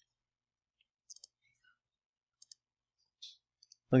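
A few faint, scattered clicks of a computer keyboard and mouse as blank lines are deleted from code in an editor.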